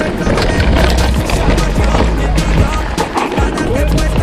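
Mountain bike rolling fast down a rocky dirt trail: tyres crunching over stones and the bike rattling with many quick knocks over the bumps. Background music plays under it.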